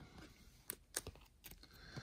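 A few light clicks and taps from trading cards being handled and set down on a table, spaced out over the two seconds.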